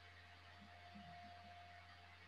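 Near silence: faint room tone with a low steady hum and a thin faint tone that fades out near the end.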